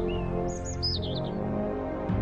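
A few short, high bird chirps in the first second, over background music of sustained low notes.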